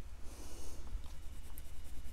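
Oil pastel rubbed on drawing paper in shading strokes, a soft scratching that is strongest within the first second.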